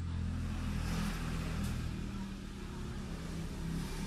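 Steady low hum under a faint rushing noise that swells about a second in and then eases off.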